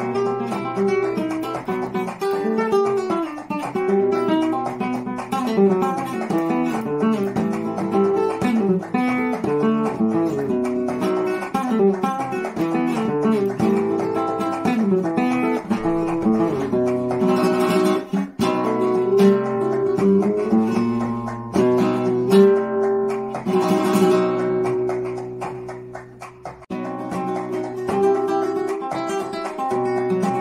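Solo flamenco guitar with a capo playing bulerías falsetas: quick picked single-note runs, with a couple of strummed chords in the second half.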